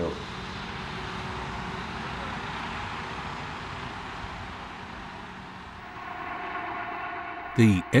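Steady rushing of wind in a snowstorm. A steady pitched tone joins in about six seconds in.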